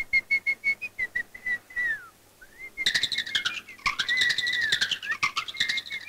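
Whistling: a quick run of short, chirpy notes, then a falling glide and a rising one, then from about three seconds in a busier warbling whistle over rapid clicks.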